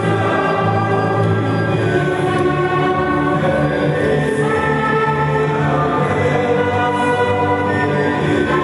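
A choir singing the closing hymn of a Mass, in long sustained notes.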